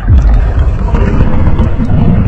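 A loud, deep rumbling noise that starts suddenly and holds steady.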